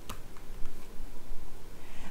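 A sharp click right at the start, then a few light ticks as playing-card-sized message cards are handled and picked up off a felt-covered table, over a steady low room hum.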